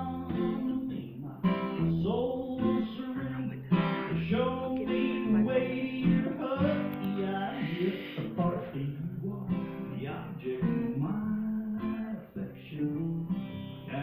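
Two acoustic guitars strummed together, playing a country-folk song.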